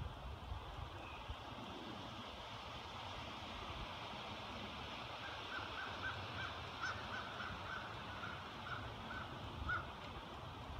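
A bird calling a run of about a dozen short, evenly spaced notes from about halfway in, slowing slightly toward the end, over a steady high background hiss.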